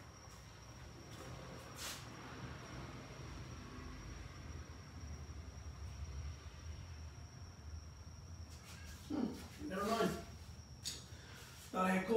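Faint low rumble with a single sharp click about two seconds in, then a distant voice speaking briefly near the end.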